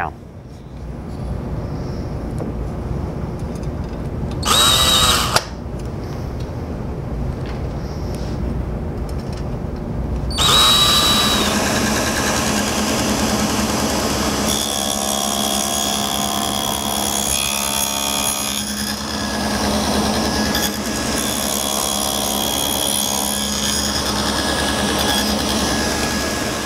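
Table saw running with a quarter-inch dado blade, cutting a dado across the end of a board fed along the fence. The motor comes up just after the start, there is a brief louder burst about five seconds in, and the cutting noise is louder and steady from about ten seconds on.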